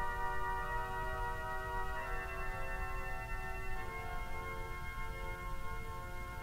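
The Mormon Tabernacle pipe organ playing soft, sustained chords on quiet stops, the chord changing about two seconds in and again near four seconds, over a steady low rumble.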